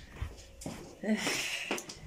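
Quiet room tone, then about a second in a short, breathy, hissing vocal sound from a person, like a sigh or snort, lasting under a second.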